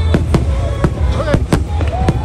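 Aerial fireworks bursting overhead in rapid succession: about six sharp bangs in two seconds.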